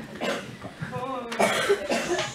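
A woman coughing and clearing her throat into a lectern microphone, mixed with bits of her voice.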